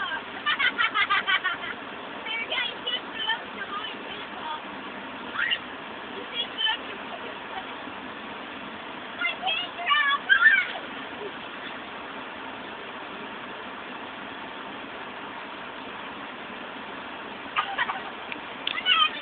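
Girls' distant, high-pitched shouts and squeals from the water, coming in short bursts, over a steady background hiss.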